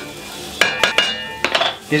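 A wooden spatula spreading oil in an enamelled cast-iron pot, with a few sharp clinks of kitchenware about half a second in, one of them ringing on briefly.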